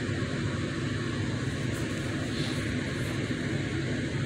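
Steady low hum and hiss inside a car cabin, unchanging throughout.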